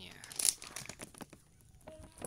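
A plastic-foil snack pouch being torn open: a sharp rip about half a second in, followed by crinkling of the packaging.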